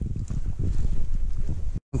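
Wind buffeting a handheld camera's microphone while walking, a steady low rumble that cuts off suddenly near the end.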